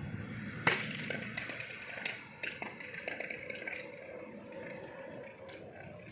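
Hollow plastic toy bat knocking on a tiled floor: one sharp knock about a second in, then a run of lighter taps and clicks.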